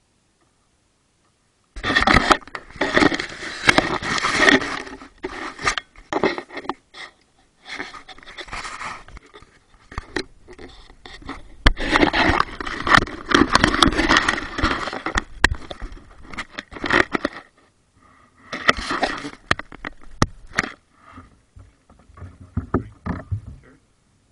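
Kayak being paddled on the water, picked up by a camera on the bow: uneven scraping and splashing from the paddle strokes with sharp knocks, in bursts, starting suddenly about two seconds in and easing off near the end.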